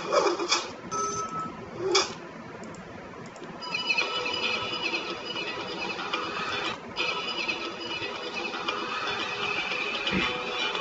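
Soundtrack of a unit-load AGV video played through laptop speakers and picked up in a small room. There are a few short sound effects over the opening logo in the first two seconds. From about four seconds on a steady layer of high, even tones continues with small breaks.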